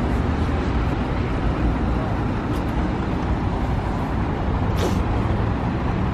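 City bus engine idling at the curb, a steady low rumble, with a short hiss about five seconds in.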